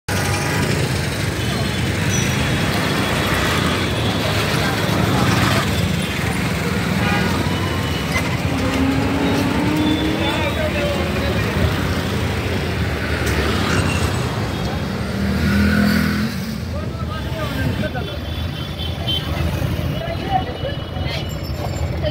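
City street traffic heard from inside a moving car: a steady low rumble of engine and road noise, with passing vehicles and scattered voices outside.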